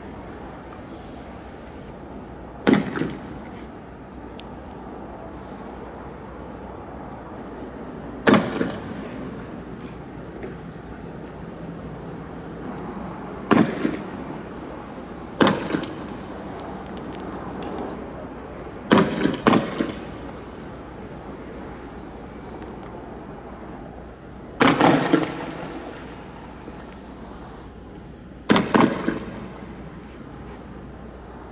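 Sharp gunshot-like bangs from tear gas launchers firing canisters, coming every few seconds, some in quick pairs or threes, over a steady background noise.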